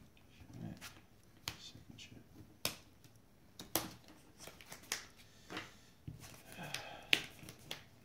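Trading cards being handled and set down on rubber playmats: a series of sharp card snaps and slaps, roughly one a second, with softer rustling of cards between them.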